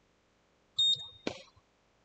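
A short, loud, high electronic beep about a second in, followed at once by a single sharp crack of a cricket bat striking the ball.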